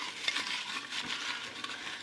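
Folded paper slips rustling and crinkling in a jar as a hand rummages through them and pulls some out, with light scattered clicks.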